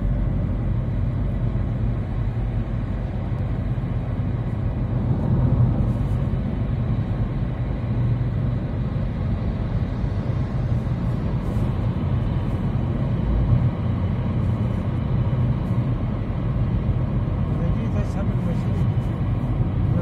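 Steady low road and engine rumble heard from inside a car's cabin as it drives at speed.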